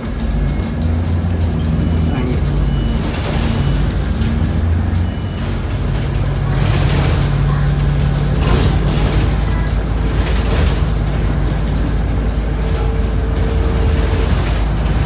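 City bus heard from inside the cabin: a steady low engine drone with road noise, broken by several short hissing bursts a second or two apart.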